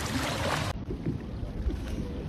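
Wind buffeting the microphone over water moving around a boat, a dense noisy rush that cuts off abruptly about three-quarters of a second in, leaving a quieter low rumble of water and boat.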